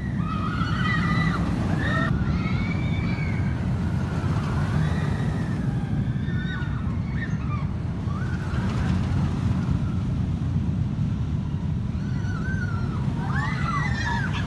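Vekoma Suspended Looping Coaster train running through its track overhead: a loud, steady rumble, with high cries rising and falling over it throughout.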